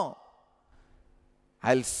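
A man's speaking voice: a word trails off at the start, then about a second and a half of near silence with a faint steady hum, and he begins speaking again near the end.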